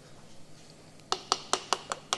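A piston ring compressor being tapped down onto the cylinder block of a Ford CVH engine, to set the piston into its bore. The sharp metallic taps start about a second in and come about five a second.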